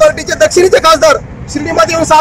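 A man speaking Marathi into a clip-on microphone, with a low hum of street noise behind him.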